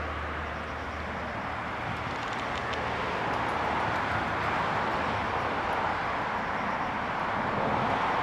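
Steady rushing background noise, growing a little louder after about three seconds.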